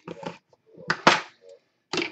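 Cardboard trading-card boxes being handled on a wooden desk: short scrapes and a sharp knock about a second in.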